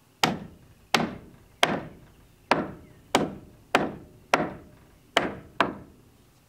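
A hammer nailing vertical wooden board siding: nine sharp strikes, about one and a half a second, each ringing briefly.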